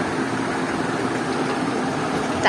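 A steady, unbroken low mechanical hum, like a motor running.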